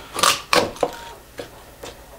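Folding knife cutting through raw chicken on a wooden cutting board: a few short sharp cuts and knocks of the blade on the board, three close together in the first second, then two fainter ones near the end.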